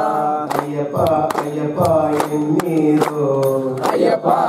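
Hindu devotional bhajan: men singing a chant together, the lead voice amplified through a microphone, with sharp hand claps keeping an even beat about two or three times a second.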